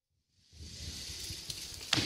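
Silence, then about half a second in a steady hiss of gym room tone with a low rumble begins, and a faint knock comes near the end.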